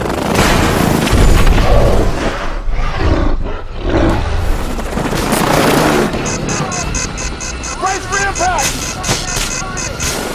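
Film sound mix of a damaged helicopter spinning out of control: engine and rotor noise with booms and men shouting, under dramatic music.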